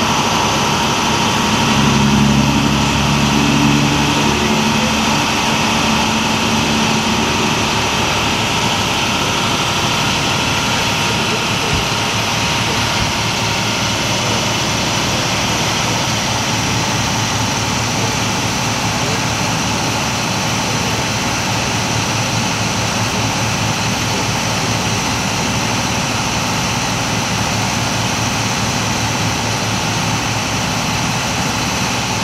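Steady, loud drone of an idling vehicle engine that runs unbroken throughout, with a low hum laid over it for the first several seconds.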